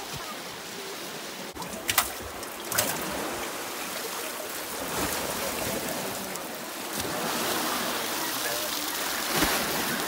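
Fast, silty Copper River water rushing steadily and churning around a wooden fish wheel, with water spilling off its frame. Two sharp knocks come about two and three seconds in.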